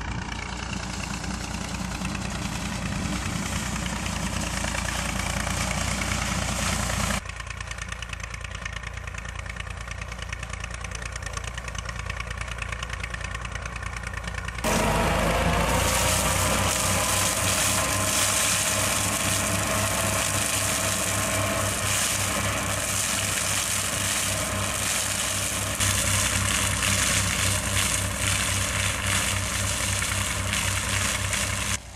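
Tractor engine running while driving a towed flail mulcher that chops down tobacco plants. The sound changes abruptly with cuts at about 7 and 15 seconds, and after the second cut a whine rises and settles as the machine comes up to speed.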